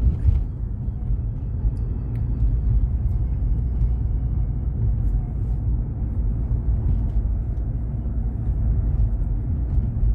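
Steady low rumble of road and engine noise inside a moving car's cabin, with a few faint ticks.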